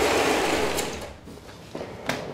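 A door being opened: a rattling rush of noise that swells at once and dies away over about a second and a half.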